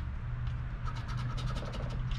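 A coin scratching the coating off a scratch-off lottery ticket in a quick run of short strokes, starting about half a second in, over a steady low hum.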